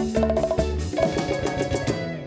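Live band playing an instrumental passage on bass guitar, keyboard, drum kit and hand percussion. About halfway through the bass drops out while the percussion keeps up quick strikes.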